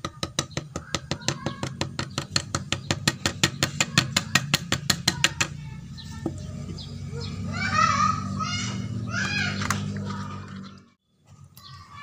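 A plastic scoop tapped rapidly and evenly against the neck of a plastic bottle, about seven taps a second, knocking wet coffee grounds and mashed cassava down into it. The tapping stops about five seconds in, and birds then chirp for a few seconds over a low steady hum.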